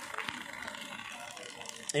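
Faint handling noise with a few small clicks, from a handheld phone being moved among leafy plants.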